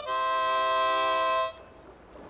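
Harmonica holding a final chord, which stops about a second and a half in.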